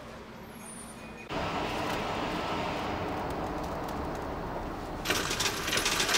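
Low room tone, then about a second in a sudden cut to the steady rumble of buses idling in a bus garage, with a louder hiss and clatter coming in near the end.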